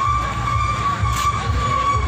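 Street background noise: a low vehicle rumble under a steady high-pitched tone, with a brief hiss about a second in.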